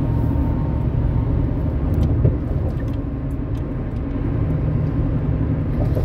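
Steady road and engine rumble heard inside a vehicle's cab while it cruises at freeway speed, with a single light tap about two seconds in.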